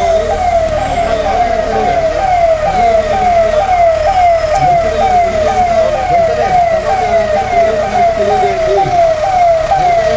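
Police vehicle siren sounding a fast repeating cycle, each cycle a quick falling sweep, about two a second, steady throughout.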